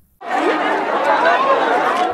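Crowd of many people talking over one another in a dense babble of voices, cutting in just after the start.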